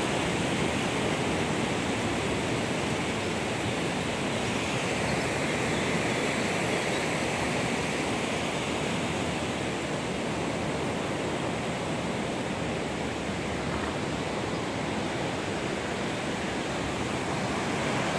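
Steady rushing of the Sava Bohinjka river in flood after heavy rain, fast, high water that has broken out of its riverbed.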